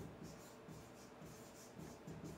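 Faint scratching of a pen writing on an interactive whiteboard, in a series of short strokes as a word is handwritten.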